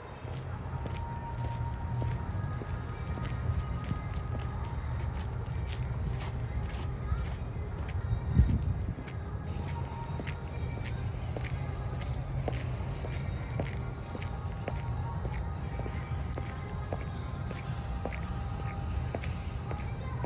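Footsteps of someone walking on a snowy park path, an even run of soft steps over a steady low rumble, with faint music in the background. A single louder bump about eight seconds in.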